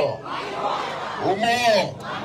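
A large outdoor crowd shouting. A loud drawn-out shouted call, rising then falling in pitch, comes about one and a half seconds in.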